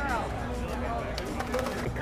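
A man's voice over a steady low rumble of outdoor background noise.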